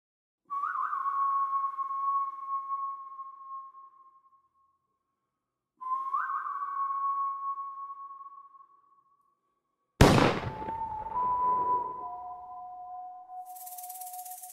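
Produced intro sound effects. Two long ringing pings come about five seconds apart, each with a quick upward flick at the start and fading over about three seconds. Near the end a sudden loud hit strikes, and a ringing tone carries on after it and fades.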